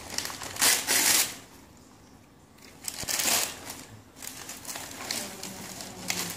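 Gift wrapping paper being ripped and crinkled by hand as a present is unwrapped, in two loud spells: one just under a second in and another about three seconds in, with a lull between.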